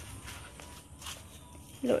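Soft footsteps, a few quiet steps about a second apart, then a voice begins a drawn-out word near the end.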